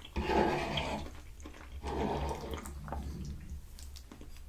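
Close-miked wet, squishy scraping of a metal fork pushing and scooping pasta in a creamy white sauce across a wooden cutting board, in two stretches, the first about a second long near the start and the second around the two-second mark.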